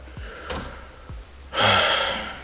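A man's heavy, breathy sigh starting about a second and a half in, after a short quiet stretch.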